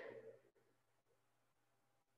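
Near silence: room tone with a faint steady hum, after the last of a man's voice fades out in the first half second.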